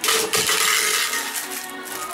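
A sharp clink right at the start, followed by about a second of clattering that fades, as a new plastic protein shaker bottle is handled.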